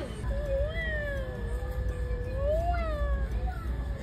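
A woman's voice holding one long, drawn-out "oooh" for about three seconds. It dips slowly in pitch and then rises again before it fades.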